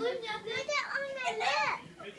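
Children's voices chattering, high-pitched and overlapping.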